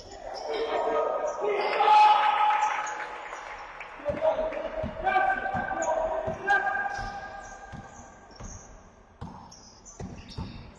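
Basketball dribbled on a sports-hall floor, bounces about twice a second from about four seconds in, with sneakers squeaking and players shouting to each other, loudest about two seconds in.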